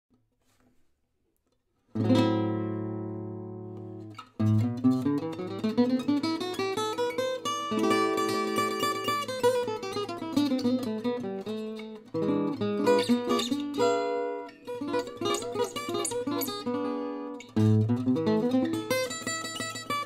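Selmer-Maccaferri-style gypsy jazz acoustic guitar built by Polish luthier Wiesław Długosz, played solo. After about two seconds of near silence a single chord rings out and fades, then runs of picked single notes and chords follow, with another loud chord near the end.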